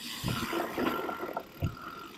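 Mountain bike rolling fast down a trail covered in dry leaves: the tyres crunch and hiss through the leaf litter, with scattered knocks and rattles from the bike over roots and bumps. A thin steady tone runs through the middle.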